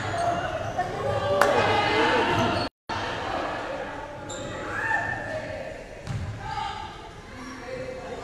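A basketball bouncing on a wooden gym court during a game, among voices of players and spectators, with the echo of a large sports hall.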